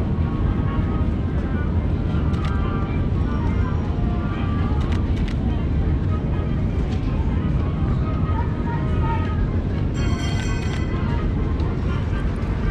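Steady outdoor city ambience: a constant low rumble with indistinct voices of passers-by.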